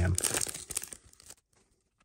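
Foil wrapper of a trading-card pack crinkling as it is pulled open, fading out after about a second and a half.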